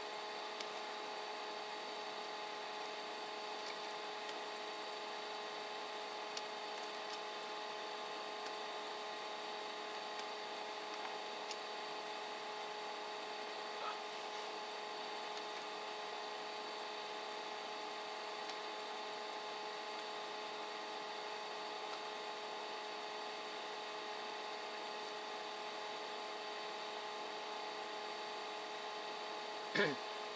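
Steady room hum from running equipment, with several constant whining tones, broken only by a few faint scattered clicks.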